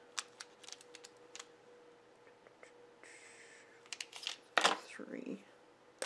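Small clicks and taps of art pens and a marker being handled on a desk. There is a brief rustle about three seconds in and a louder scrape about four and a half seconds in, over a faint steady hum.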